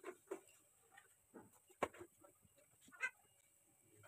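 Whole spices crackling faintly in hot oil in a steel pot: a handful of small, scattered pops, the first stage of a tempering before the other ingredients go in.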